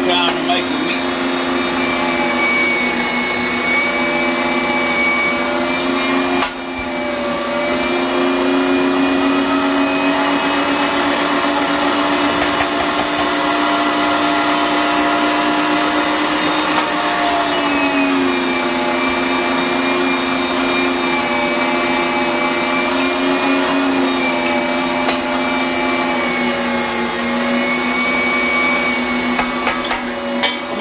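Electric meat grinder running steadily as chunks of wild hog pork are pushed through it, a continuous motor hum and whine. Its pitch sags and shifts a few times as the meat loads the motor, with a brief dip about six seconds in.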